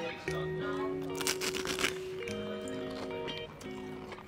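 Background music with a few held notes, and about a second in, a short crackling noise.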